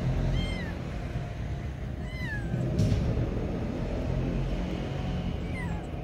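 A cat off-screen meowing three times, short calls a couple of seconds apart, each sliding up and down in pitch and the later ones falling away. Under them runs a steady low background noise.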